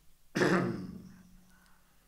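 A man clears his throat with one sharp cough about a third of a second in, fading within about half a second.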